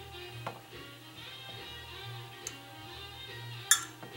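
Quiet background music, with a few light knocks as a wooden spatula scrapes butter out of a glass measuring cup; the sharpest knock comes near the end.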